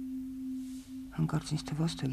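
A steady low tone at one unchanging pitch, like a hum, runs under the soundtrack. A voice speaks briefly in the second half.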